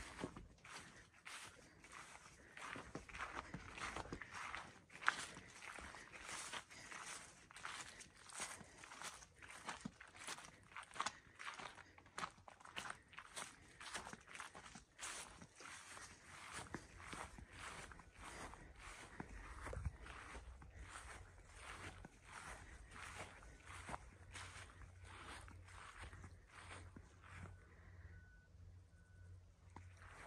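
Faint footsteps through long pasture grass, about two steps a second, dying away in the last few seconds.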